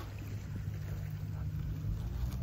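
A steady low droning rumble, with no sudden sounds over it.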